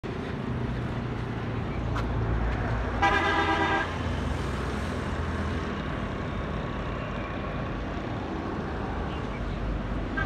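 Steady low rumble of road traffic, with a vehicle horn sounding once for under a second about three seconds in.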